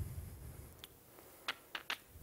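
Keystrokes on a MacBook Pro laptop keyboard typing a short terminal command: one key click a little before halfway, then three quick clicks near the end. A low rumble sits under the first half-second.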